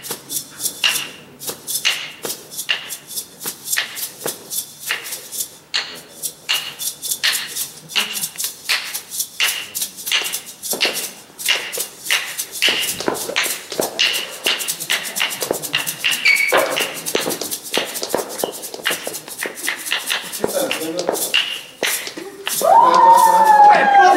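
Maracas shaken in a steady beat, about two to three shakes a second. Near the end a loud voice breaks in over them.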